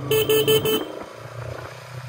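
A horn beeping four quick times within the first second, over the steady running of a Bajaj Pulsar NS200's single-cylinder engine heard from the saddle.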